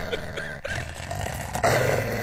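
Men laughing hard, mostly breathy and without voice, with a louder gasping breath about a second and a half in.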